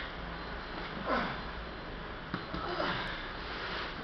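Heavy breathing of a man doing sandbag shouldering: a loud, sharp exhale about a second in, then further strained breaths.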